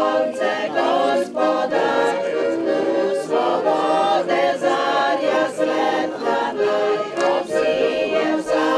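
Music: a choir singing.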